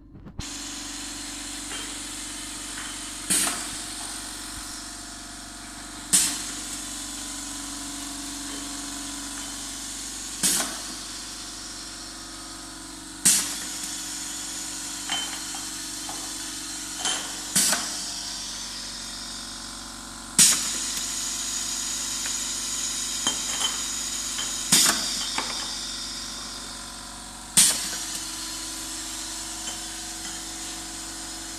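Single-head pneumatic piston paste filling machine cycling: its air cylinder and valve give a sharp clack with a burst of exhausting air about every three to four seconds, the strokes alternating a shorter and a longer gap as the piston draws in paste and pushes it out. A steady hum and hiss run underneath, with a few lighter clicks between the strokes.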